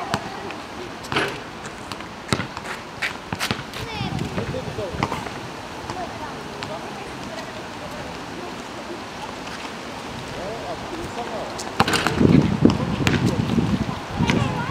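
Basketball bouncing on an outdoor asphalt court: a sharp knock about a second after the shot, then a run of bounces coming quicker and quicker as the loose ball settles. Near the end the ball is dribbled again.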